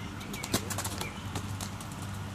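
A quick series of light taps and knocks, the sharpest about half a second in, over a steady low hum: a child's running footsteps and a small rubber ball on a concrete sidewalk.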